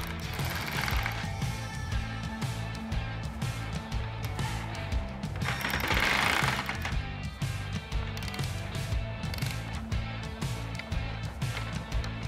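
Cordless electric ratchet driving a 10 mm bolt into a plastic grille latch, loudest in one longer run about six seconds in. Background music with a steady beat.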